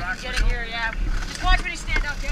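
Indistinct voices of a rescue crew talking over a steady low rumble.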